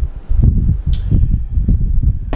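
Plastic parts of a battery-operated LED puck light being handled, its lens cover and housing, with one short scrape about a second in, over a low background rumble.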